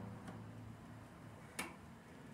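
An acoustic guitar's last low note dying away faintly, then a single sharp knock about a second and a half in as the guitar is lifted and moved.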